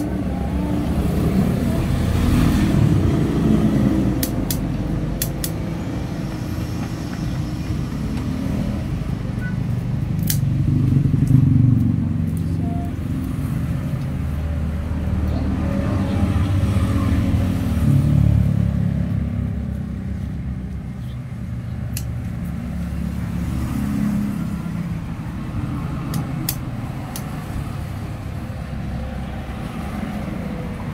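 Low rumble of passing vehicles that swells and fades several times, with a few sharp clicks scattered through.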